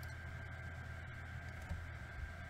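Steady low electrical hum with a thin, steady high whine and hiss: the recording's background noise. A couple of faint computer-mouse clicks sound as browser tabs are switched.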